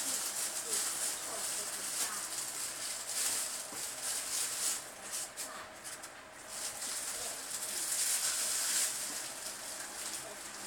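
Packaging rustling and crinkling in uneven bursts as a large, heavy statue is worked out of its box.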